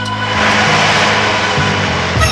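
Background score: a low held synth tone under a broad rushing swell, a whoosh-like transition effect that rises a moment in and fades away over about a second and a half.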